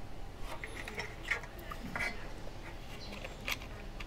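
Scattered light clicks and knocks of a metal 35 mm SLR body, a Yashica TL-Electro, being picked up and turned over by hand, over a low steady background hum.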